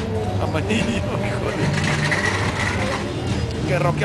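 Freight train of covered hopper cars rolling past close by, with a steady low rumble of wheels on the rails.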